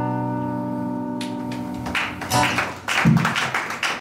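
An acoustic guitar's final chord ringing out and slowly fading, then applause starting about two seconds in.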